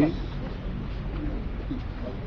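A man's spoken word trails off at the start, then a pause filled with the faint murmur of a gathered crowd over a steady low hum.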